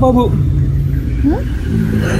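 A motor vehicle engine running with a steady low rumble. Short wordless vocal sounds come at the start and a rising one about a second in.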